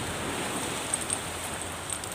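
Sea waves washing on a rocky shore: a steady, even hiss, with two faint ticks about a second in.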